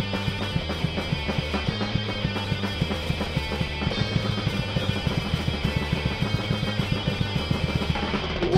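Thrash metal band playing live: distorted electric guitar, electric bass and a drum kit driving a fast riff, an instrumental passage without vocals.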